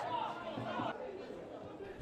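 Faint, distant voices calling and shouting on a football ground as a penalty goes in; the sound thins out about a second in.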